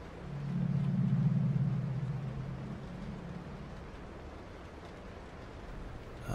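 A low droning hum swells up within the first second, holds briefly, then fades away over the next couple of seconds.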